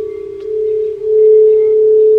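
Singing bowls ringing in a loud, steady, sustained tone. A second, slightly higher bowl tone swells in about a second in, and the two hum together.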